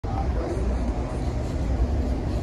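Steady low rumble of a moving passenger train, heard from inside the car.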